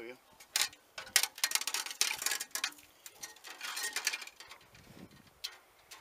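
A rag rubbing along a steel drain-snake cable as it is wiped clean of oil sludge pulled from radiator cores: a series of short, irregular scraping and rustling strokes, with light metallic ticks from the cable.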